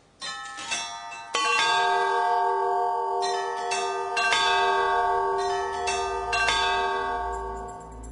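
Bells struck again and again at uneven intervals, each strike leaving several long-ringing tones that overlap and build up, then fading away near the end.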